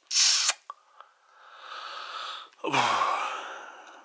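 Close breathing: a sharp hissy intake of breath at the start, then a longer breath out about 2.7 s in that trails off. A couple of light clicks from handling the plastic Blu-ray case come in between.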